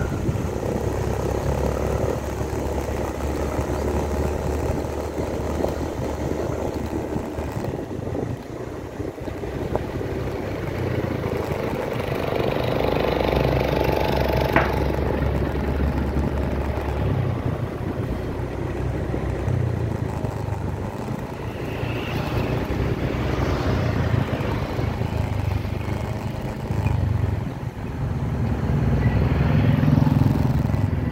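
Honda BeAT Street 110cc scooter's single-cylinder engine running steadily under way, heard from a phone mounted on the scooter, with road noise; the engine note rises and falls with the throttle.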